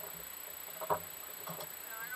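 Water gurgling and lapping against a small sailing catamaran's hull as it moves slowly through calm water, with one short, sharper sound about a second in.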